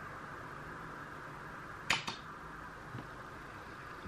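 Steady background hiss of a small room, with a sharp click about two seconds in, quickly followed by a fainter second click, and a soft tick a second later.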